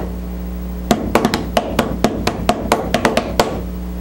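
A short percussive beat: a quick, uneven run of about a dozen sharp drum-like knocks, starting about a second in and stopping shortly before the end, over a steady low hum.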